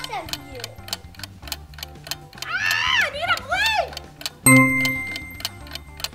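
Rapid, steady clock-style ticking, an edited-in timer effect running under a staring contest. About halfway through, a pitched, voice-like sound slides up and down, and near the end a loud, held tone comes in suddenly.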